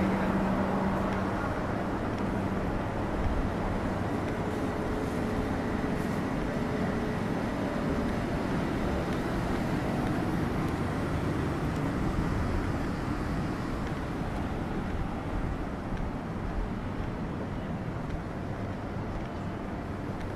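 Steady city background hum of the kind traffic makes heard from a side lane, with a low machine tone that fades in the first second or so.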